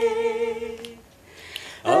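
Unaccompanied singing voice holding one steady note for about a second. After a breath, the song line starts again near the end.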